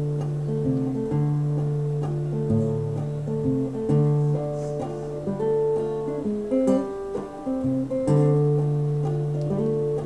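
Acoustic guitar played solo between sung verses: a picked melody moving over held bass notes, with no voice.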